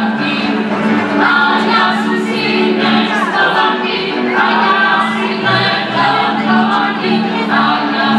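Wallachian folk music: a group singing a folk song with a folk band accompanying, over a steady held low note.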